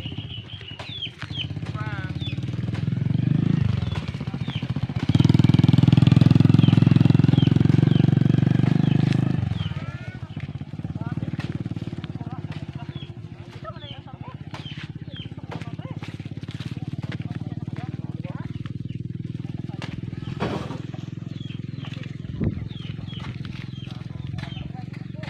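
Diesel engine of an Isuzu truck loaded with sugarcane, running steadily and revving hard for about four seconds midway as it pulls the load across a soft harvested field.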